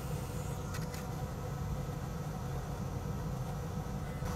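Steady low hum and faint hiss of a fan or blower running, with a brief faint scratch a little under a second in.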